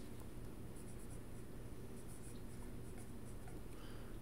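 Ballpoint pen writing on a sheet of paper, faint scratching strokes over a low steady hum.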